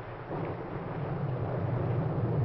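Storm sound effect on an old film soundtrack: a low, rumbling noise that grows steadily louder.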